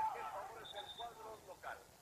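Faint, distant voices of people talking or calling out, with a short high steady tone about halfway through.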